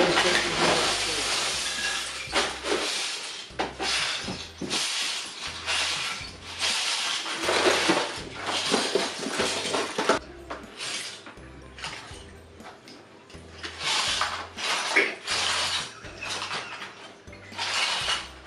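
Loose plastic Lego bricks clattering and rattling in repeated bursts as a tub of them is tipped out and spread across a rug. The bursts ease off for a few seconds after the middle, then return.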